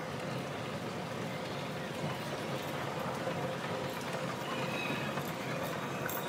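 Steady background din of a crowded shopping mall: indistinct crowd noise and footsteps, with the running of a moving escalator underfoot.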